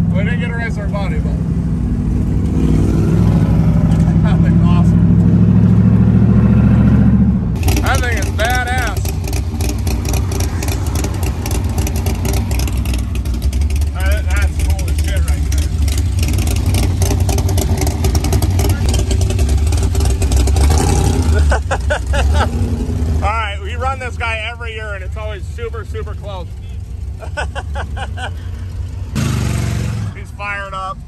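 GM Gen V L83 V8 in a 1972 Mazda RX-2, heard from inside the cabin: the engine note builds steadily for about seven seconds. After an abrupt cut it runs on more steadily, with voices over it.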